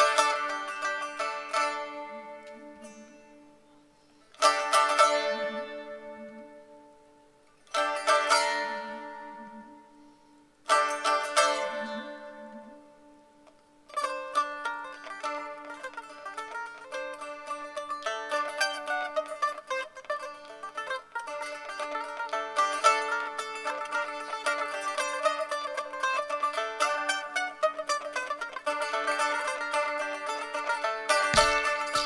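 Saz, a Turkish long-necked lute, played solo. A strummed chord at the start and three more about 4, 8 and 11 seconds in each ring out and fade. From about 14 seconds on comes a quick, unbroken plucked melody over a steady low note.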